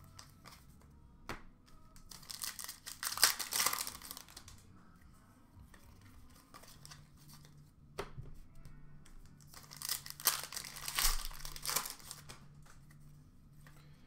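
Hockey card pack wrappers being torn open and crinkled, in two bursts a few seconds apart, with a couple of light knocks from the packs and cards being handled.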